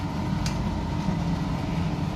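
Fried rice being stirred in a steel kadai over a kitchen stove: a steady low rumble with one light tap of the steel ladle about half a second in.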